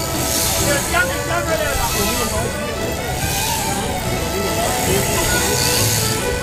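People talking with music playing, over a steady background hum.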